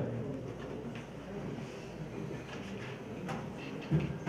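Quiet hall room tone with faint background murmur and a few soft clicks and knocks.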